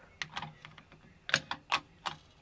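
Small hard-plastic toy pieces clicking and tapping together as a dollhouse accessory is worked onto a toy table, about half a dozen short clicks, the loudest in the second half.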